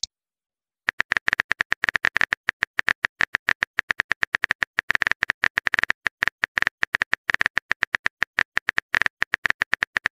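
Phone virtual-keyboard tap sounds clicking rapidly and unevenly as a text message is typed. They start about a second in and keep going, several clicks a second.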